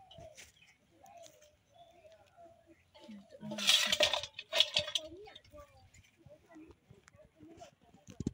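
Handfuls of freshly picked wild mushrooms being put into and handled in a stainless steel bowl: two loud bursts of rustling and light clinking against the metal about halfway through.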